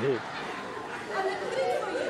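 Speech: voices talking and chattering.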